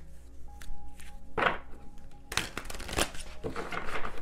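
A deck of tarot cards being shuffled and handled: a few short riffling strokes, the loudest about one and a half seconds in. Under the first half, a soft sustained musical chord holds and then stops.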